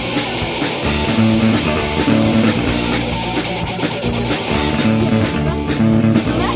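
Punk rock band playing live, with distorted electric guitar, bass guitar and a drum kit.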